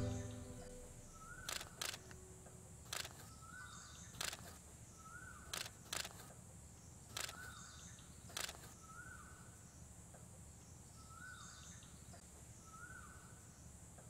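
Faint outdoor ambience with a bird repeating one short call about every second and a half, and a camera shutter clicking several times, sometimes twice in quick succession, until about eight and a half seconds in.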